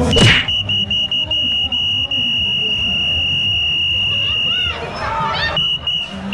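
A sharp hand slap from a high five, then a loud, steady, shrill tone held for about four and a half seconds with brief breaks, over crowd murmur at a busy bar.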